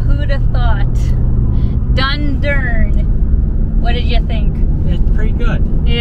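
Steady low road and engine rumble inside a moving vehicle's cab on the highway, with short stretches of voices over it.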